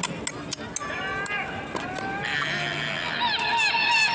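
Outdoor crowd voices mixed with high calls that slide down in pitch, many of them overlapping in the second half, along with a few sharp clicks.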